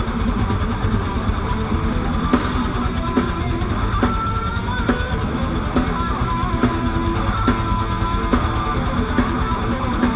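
Rock band playing live: distorted electric guitars over a steady drum-kit beat, loud and continuous.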